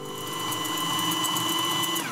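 Small electric kitchen-appliance motor running with a steady whine, its pitch falling as it winds down at the very end.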